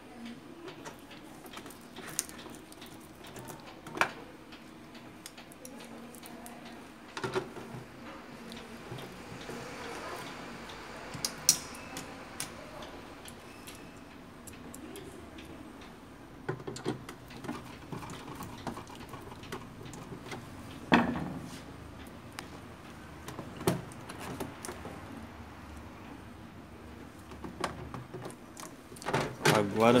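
Scattered clicks, taps and knocks of a screwdriver and the plastic casing and ink-tank parts of an Epson L120 inkjet printer as it is screwed and snapped back together, with a sharper knock about two-thirds of the way through.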